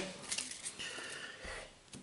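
Faint rustling and sliding of a stack of thin, glossy Topps Match Attax trading cards being handled and set down on a table, dying away to near silence near the end.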